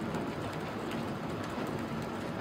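Quiet room noise in a hall: a steady low hiss with faint, scattered small clicks.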